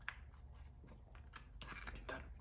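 Faint clicks and light rustling from trading cards and a hard plastic card case being handled, with several small clicks clustered near the end.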